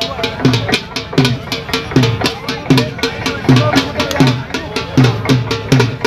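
Dhol drum played in a steady, driving rhythm: deep bass strokes that drop in pitch, about two a second, with lighter sharp strokes between them.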